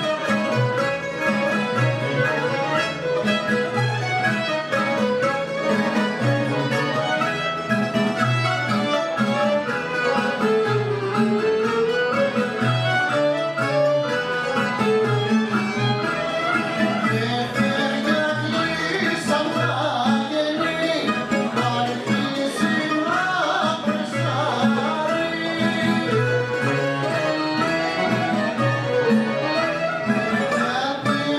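Rebetiko band playing an instrumental passage on bouzouki, baglamas, guitar, accordion and violin, with a pitched melody line gliding over a steady rhythm.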